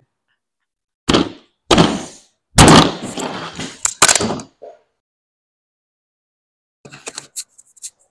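A few thunks and a clatter of small metal tools and parts being picked up and set down on a table, the loudest clatter a little under three seconds in. Then a pause, and a few light clicks near the end.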